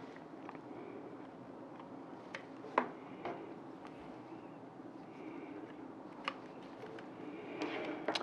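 Faint handling sounds of cables and a bare hard drive: a few light clicks and taps, the loudest a little under three seconds in, as a SATA cable is fitted to the drive's connector, over quiet room tone.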